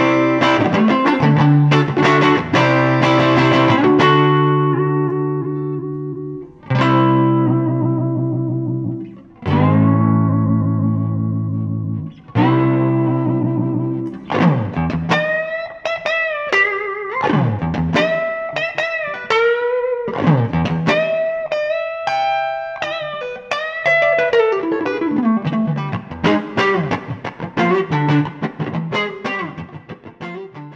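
A 1958 Fender Stratocaster electric guitar played through a 1957 Fender Princeton tweed amp: strummed chords, then three chords each struck and left to ring out, then from about halfway a single-note melody with string bends and vibrato.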